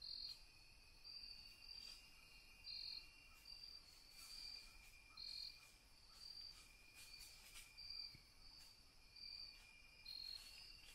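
Crickets chirping faintly: a short, high chirp repeating a little more often than once a second over a steady, thin high trill.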